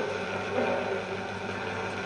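Steady hiss and low hum from an old speech recording on a vinyl record playing on a turntable, with no voice on it for these seconds.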